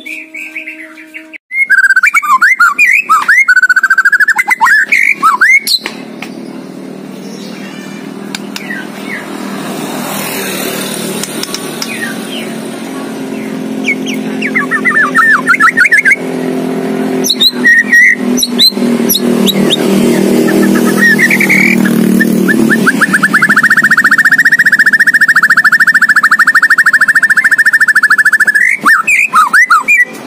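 White-rumped shama (murai batu) singing loud, varied phrases of whistled glides, its song full of imitated calls of other birds. Near the end it gives one long, rapid trill lasting about five seconds. An engine hums low in the background through the middle.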